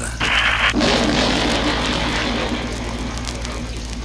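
Dramatic music and sound effects from a 1977 vinyl Halloween record. A short hissy burst comes first, then a wash of noise that slowly dies away, over the record's steady low hum.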